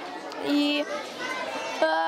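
Children's voices chattering in a large hall, with a short word from a child's voice about half a second in.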